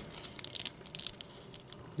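Faint handling noise: light, irregular clicks and rubbing as fingers work the arm joints of a McFarlane Toys 5-inch plastic action figure.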